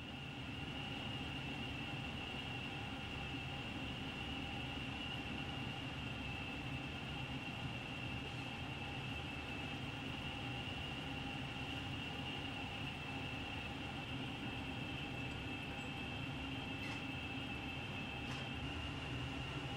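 Steady mechanical hum with a thin, high whine held above it and no change in pitch or level.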